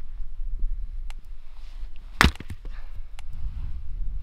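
A hatchet strikes wood once, sharply, about two seconds in, with a few lighter knocks and taps around it.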